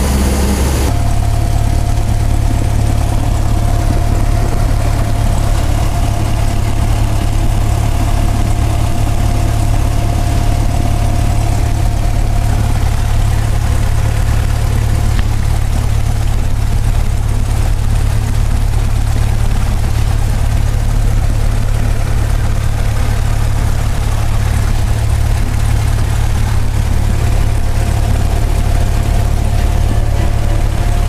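Single-engine light airplane's piston engine running at idle with the propeller turning, heard inside the cabin as a steady low drone, with a faint steady whine above it.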